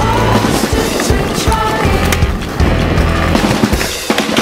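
Skateboard wheels rolling on concrete, with a few sharp knocks of the board, under a music track with steady held bass notes.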